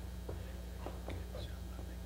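Faint whispering and quiet voices over a steady low electrical hum, with a few light scattered ticks.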